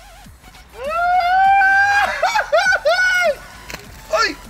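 A man's excited shout: one long held call starting about a second in, then a quick run of short yelps, as a hooked chain pickerel is pulled from the water and onto the bank.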